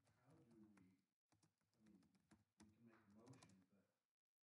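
Near silence: faint voices far from the microphone, with scattered light clicks.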